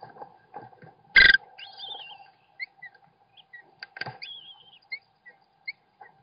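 Downy American kestrel nestlings giving thin, wavering high calls and short chirps, begging as the adult male feeds them in the nest box. A single loud knock comes about a second in, with faint rustling and a steady hum under it all.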